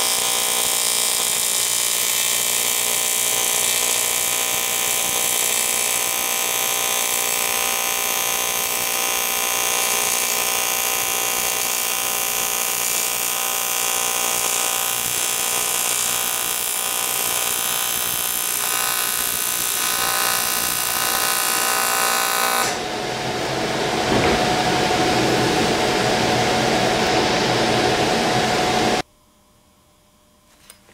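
AC TIG welding arc on aluminum, a steady high-pitched buzz with hiss running while the torch lays a bead along a T-joint. About 23 seconds in it turns rougher and hissier, and about a second before the end it cuts off abruptly as the arc is stopped.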